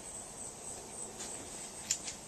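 Quiet outdoor background with a steady high-pitched insect chorus, and one short click near the end.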